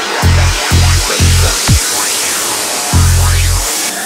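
Dark psytrance (darkpsy) electronic track at about 170 BPM: deep pulsing kick-and-bass hits that drop out about halfway through under a rush of high noise, then a long held bass note near the end.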